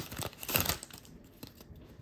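Foil wrapper of an Upper Deck hockey card pack crinkling as it is pulled open. The crinkling is loudest in the first second, then drops to faint rustles as the cards are handled.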